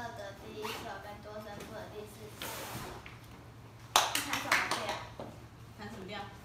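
Soft talking, with a quick run of several sharp hand claps about four seconds in, the loudest sound.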